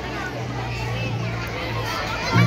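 Many children's voices chattering at once, with a steady low hum underneath.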